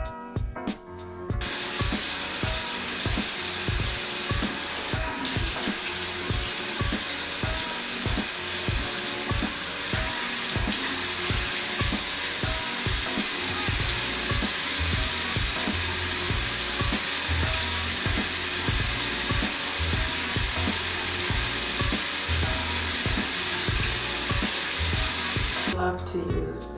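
Tap water running steadily into a sink, starting suddenly about a second in.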